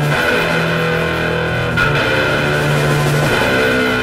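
Sludge/doom metal: heavily distorted electric guitar and bass holding long, low notes that shift in pitch every second or so, at a steady loud level.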